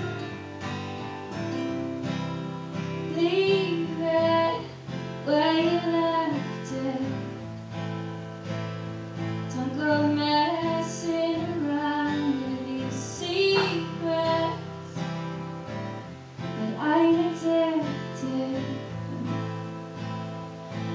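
A woman singing over two acoustic guitars played live. Her voice comes in phrases a few seconds long with short gaps between them, while the guitars keep playing underneath.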